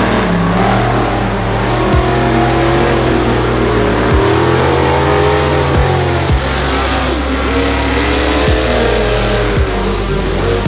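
An Ultra4 off-road buggy's engine revving up and down under load as it climbs, mixed under electronic music with a heavy bass line and a steady beat.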